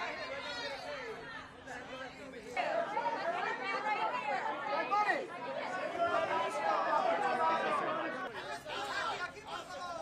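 Many voices chattering and calling out over one another, louder from about two and a half seconds in.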